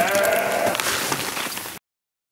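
A single drawn-out animal cry that rises at the start and is then held for under a second, over rustling and crackling straw. The sound cuts off suddenly near the end.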